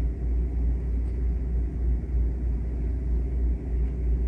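Steady low background rumble, strongest at the very bottom of the range, with nothing else standing out.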